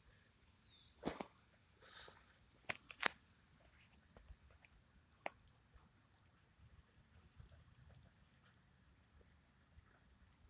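Near silence, broken by a few brief sharp clicks about one, three and five seconds in, with a couple of soft hissy puffs.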